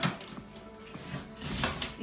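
Soft background music, with two sharp scraping rips at the start and about a second and a half in: a cutter slicing through packing tape on a cardboard box.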